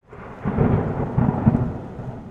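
A rumble of thunder that swells within the first half second and then slowly fades.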